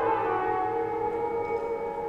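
Woodwind and percussion chamber ensemble holding soft sustained notes of a contemporary piece, a low held note dropping out about one and a half seconds in.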